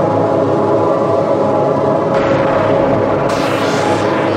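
Dark electronic dance track, instrumental intro: sustained layered synth tones with the deep bass cut out. A hiss layer comes in about halfway and grows brighter near the end.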